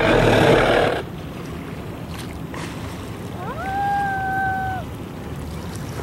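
A southern right whale surfacing close by: a loud rush of breath from its blow in the first second. About three and a half seconds in comes a short pitched call that rises, then holds level for about a second.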